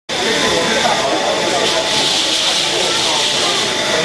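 Model steam engine hissing steadily as it vents steam, with voices talking in the background.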